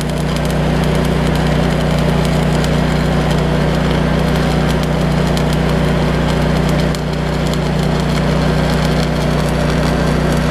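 Stick (arc) welding: the arc crackles and sputters steadily as a rod electrode runs along a seam in a metal frame, over a steady low hum. The arc dips slightly about seven seconds in.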